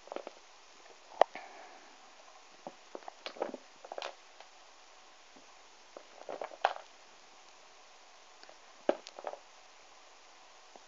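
Small novelty rubber erasers being picked through and handled in a pile: scattered short clicks and soft knocks, the sharpest about a second in.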